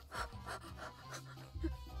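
A woman's breathy, almost silent laughter: short panting breaths.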